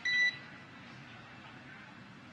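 A single short electronic beep on the mission radio loop, lasting about a third of a second right at the start, followed by faint background hiss.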